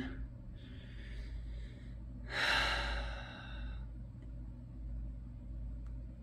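A man's long sigh starting about two seconds in, with a fainter breath just before it, over a low steady hum.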